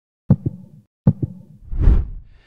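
Intro sound effect of two heartbeats, each a lub-dub double thump, followed by a rising whoosh with a deep rumble.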